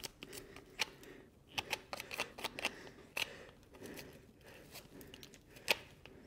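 Faint, irregular clicks and scrapes of a hoof pick working at a horse's lifted hoof.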